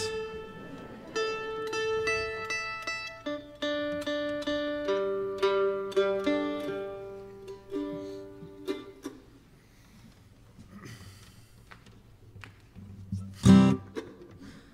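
Mandolin being tuned: single strings and string pairs plucked and let ring at a few fixed pitches, again and again. The sound then fades to quiet, and a short loud sound comes near the end.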